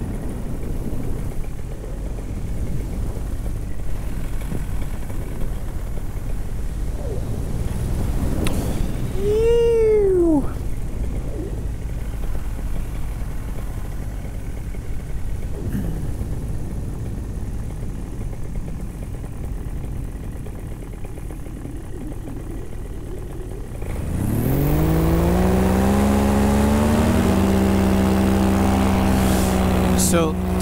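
Paramotor engine running low under wind noise on the microphone. About 24 seconds in, the throttle opens: the engine climbs in a rising whine, then holds a steady, louder drone. A brief rising-and-falling tone sounds about nine seconds in.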